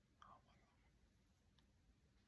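Near silence: room tone, with one faint brief sound about a quarter second in.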